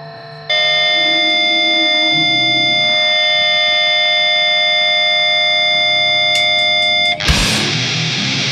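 Grindcore demo recording: a distorted electric guitar comes in suddenly and holds one steady, unchanging ringing chord for about six and a half seconds. Near the end the full band, drums included, crashes back in loud.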